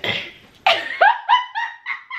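A woman's high-pitched laughter: a quick run of short 'ha' bursts that starts about half a second in and trails off.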